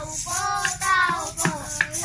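Young children singing a Christmas carol together, with sharp percussive knocks or claps keeping a rough beat.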